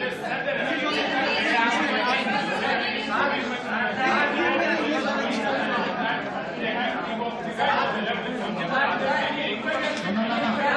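Indistinct chatter of many people talking over one another in a large, echoing hall.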